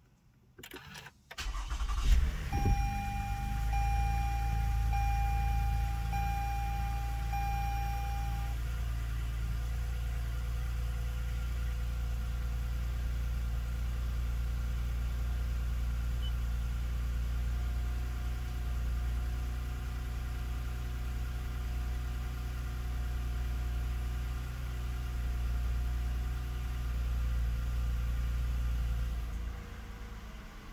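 2019 Lexus ES350's 3.5-litre V6 push-button started from inside the cabin: a couple of clicks, a brief crank, the engine catches about two seconds in and then idles steadily. A dashboard chime beeps repeatedly for about six seconds after it catches, and the idle turns quieter just before the end.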